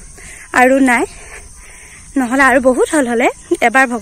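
A woman's voice speaking in short phrases with pauses between them, over a faint steady high hiss.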